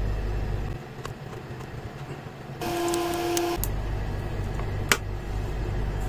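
A steady low hum, with a single horn-like tone lasting about a second a little past halfway and a sharp click near the end.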